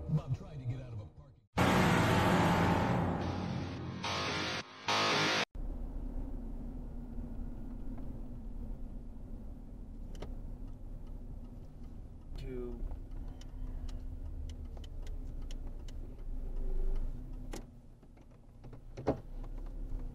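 About four seconds of loud music that cuts off abruptly, then the steady low rumble of a car cabin on the road, with scattered faint clicks.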